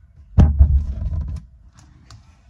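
Handling noise on a phone's microphone as the phone is gripped and moved: a sudden loud bump and rubbing, heavy in the lows, lasting about a second, then a couple of light clicks near the end.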